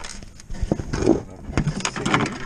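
Rusty metal sliding door of an enclosed skunk trap being pulled back by hand, scraping and clunking in its guides, with several sharp knocks.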